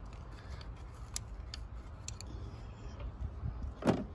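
A few small metallic clicks, then one louder knock near the end, from hand work on the fuel injectors and fuel rail of a Mercedes-Benz engine, over a low steady rumble.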